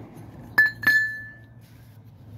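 Two sharp metal-on-metal clinks about a third of a second apart, the second ringing on briefly in one clear tone, as steel parts or a tool knock against each other.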